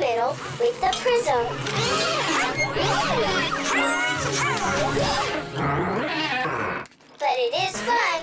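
Lively background music for a children's show, with high, swooping voice-like sounds over it. It drops out briefly about seven seconds in, then resumes.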